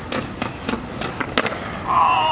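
Skateboard rolling on concrete, its wheels giving a steady rumble broken by several sharp clicks and knocks.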